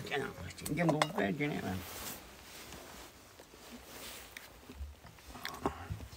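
A person speaking for about two seconds, then quiet room sound with a few light clicks and clinks near the end.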